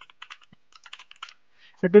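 Typing on a computer keyboard: a quick run of soft keystrokes that stops about a second and a half in.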